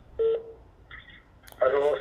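Two short electronic telephone tones, about two-thirds of a second apart, like keypad or line beeps, followed by a man's voice starting near the end.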